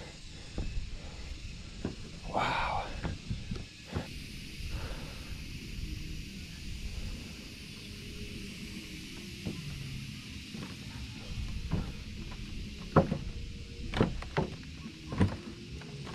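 Wind rumbling on the microphone, with scattered knocks and footsteps on loose wooden platform boards, several sharper knocks near the end.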